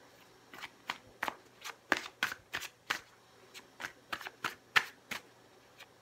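A deck of cards being shuffled by hand, the cards riffling and slapping against each other in short, uneven strokes about three times a second.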